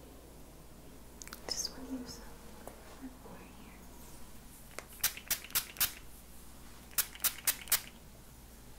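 A hand-held spray bottle misting in two quick sets of four short sprays, the sets about two seconds apart, after some soft rustling.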